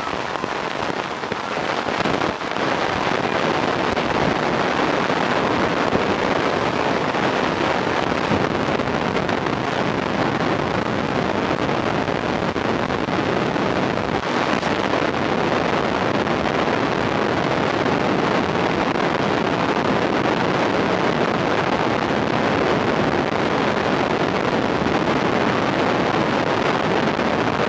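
Steady rushing noise with no distinct events, growing a little louder about two seconds in.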